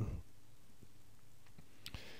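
Quiet room tone with a single sharp click shortly before the end.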